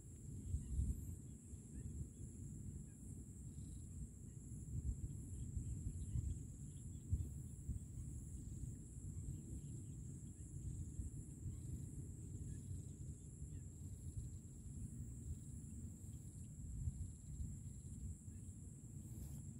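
Quiet outdoor ambience: wind rumbling faintly on the microphone, with small gusts, under a steady thin high-pitched hiss.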